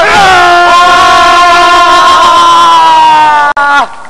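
A man's voice holding one long, loud vocal note with a slight waver, sliding down in pitch near the end.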